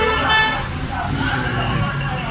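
A brief vehicle horn toot, about half a second long, at the start, over a steady low rumble of street traffic.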